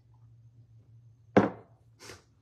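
A ceramic coffee mug set down on a hard surface: one sharp knock about a second and a half in, over a steady low hum.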